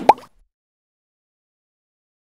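The last of a voice with a sharp pop and a short rising blip, cut off suddenly a moment in, then dead digital silence.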